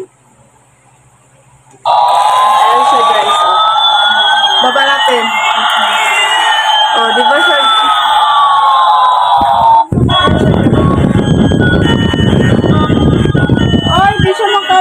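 Battery-powered toy airplane's electronic sound effect switching on suddenly about two seconds in: a loud siren-like wail of two crossing pitch sweeps, one rising and one falling, over a steady buzz. Near ten seconds it changes abruptly to a harsher, noisier sound.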